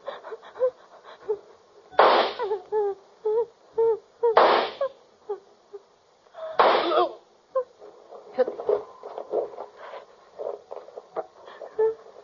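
Three pistol shots from a radio drama, about two and a half seconds apart, each a short noisy crack. A woman sobs and whimpers between them.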